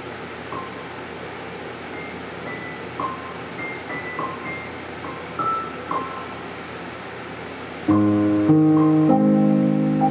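Digital piano played softly, a few quiet single high notes over a steady background fan hum, then full, much louder chords starting about eight seconds in.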